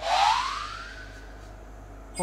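An edited-in rising whoosh sound effect: one tone sweeps upward in pitch over about a second, with a hiss above it, and fades away.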